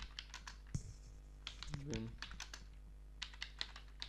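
Computer keyboard keys clicking in irregular runs as a line of code is typed, over a steady low hum. A brief murmur of voice comes about two seconds in.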